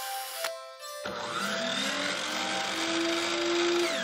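Channel intro sting: a short run of musical tones, then from about a second in a whirring, tool-like sound effect whose pitch rises steadily and falls away near the end.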